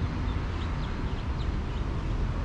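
Steady low wind rumble on the microphone, with a few faint, short, high chirps in the first second.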